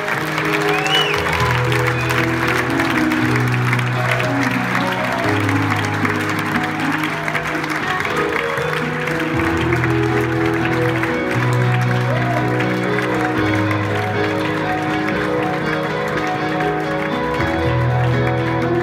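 Audience applauding over slow, held low keyboard chords that change every second or two.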